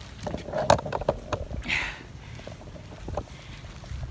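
Close knocks and rustling on the phone camera as a playful dog pushes its face against it, the sharpest knock coming under a second in. A short breathy hiss follows about two seconds in, then only faint outdoor background.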